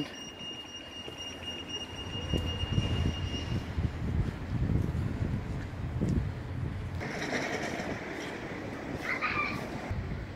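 Low rumbling street and building-site noise that swells about two seconds in, like a heavy vehicle or machinery passing, with a faint high steady whine that stops a few seconds in.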